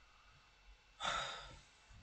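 A man sighing: one breathy exhale about a second in, fading away over half a second.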